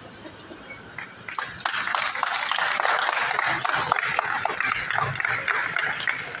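Seated audience applauding: a dense patter of hand claps starting about a second in and easing off near the end.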